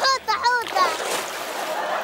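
A child's high voice speaks briefly, then a steady rush of sea water splashing.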